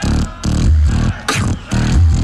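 Beatboxing through a stage microphone and sound system: deep bass kicks about twice a second with sharp snare and hi-hat sounds between them.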